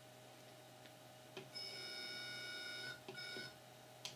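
GigaPan EPIC 100 robotic head's motor whining steadily for about a second and a half as it tilts the camera, then a short second nudge. Each run starts with a faint click.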